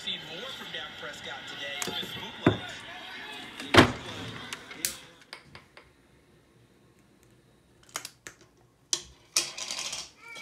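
Handling of glass candle jars, a lid and a long utility lighter: a hard knock a little under four seconds in, then a few sharp clicks and taps near the end, with a voice in the background during the first half.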